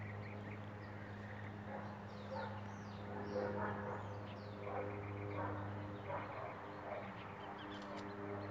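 Faint bird calls and chirps, short and scattered, over a steady low hum.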